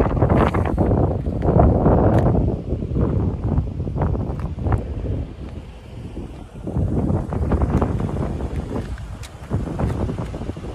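Wind buffeting a phone's microphone: a loud, gusty low rumble that surges and eases, strongest in the first few seconds and again about seven seconds in.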